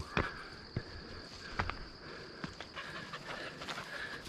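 Footsteps on a steep stone-and-grass trail, a few separate steps about a second apart, over a steady high-pitched hum.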